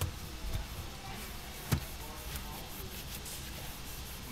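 Quiet rubbing and handling as a cloth rag wipes around a car's centre console and cup holders, with one sharp knock a little before halfway through.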